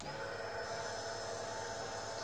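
Upgraded plug-in electric fuel pump for a Kawasaki Ninja H2 switching on and running with a steady whine. It draws about 11 amps while holding the regulator's 55 psi base pressure.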